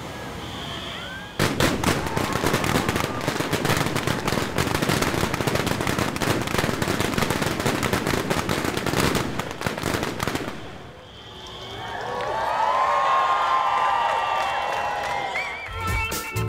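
Ground-level fireworks and pyrotechnic fountains crackling and popping in a dense, rapid stream, starting about a second and a half in and running for about nine seconds before dying down. A swell of sound with wavering tones follows near the end.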